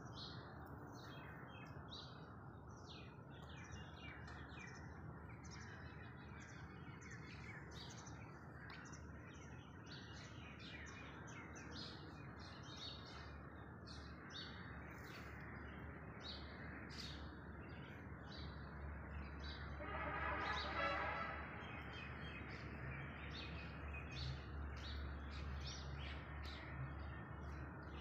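Many small birds chirping in quick short notes over a faint steady background hum. About twenty seconds in, a brief louder pitched sound with several stacked tones rises over them for a second or so.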